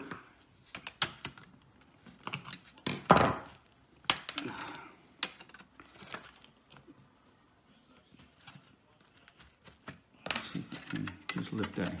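Plastic pry tool and fingers clicking and scraping against a laptop's plastic and metal chassis while prying around the hinge, in scattered small clicks with one louder knock about three seconds in. Speech returns near the end.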